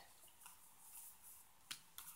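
Near silence with faint room hiss, broken by a short sharp click near the end as a tarot card is handled on the table.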